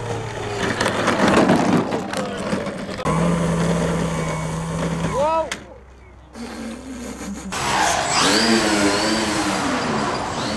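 A model airplane's motor and propeller humming steadily, then cutting off suddenly about five seconds in. Near the end, wind noise and a person's drawn-out wordless exclamation.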